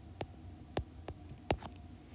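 Three or four faint, short clicks spaced irregularly over a low steady hum.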